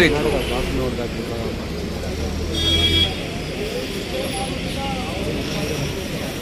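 Road traffic ambience: a vehicle engine's low rumble that fades about three seconds in, with faint voices of people in the background and a brief high tone just before the rumble fades.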